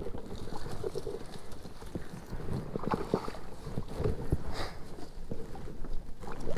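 Scattered, irregular knocks and splashy rustles over low wind rumble on the microphone, as a hooked largemouth bass is fought and reeled in beside a kayak.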